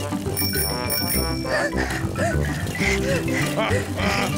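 A bicycle bell rings, two quick rings about half a second in, over children's cartoon background music. Short cartoon giggles and vocal sounds follow.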